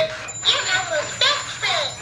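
A high-pitched voice in three or four short syllables with sliding pitch and no clear words.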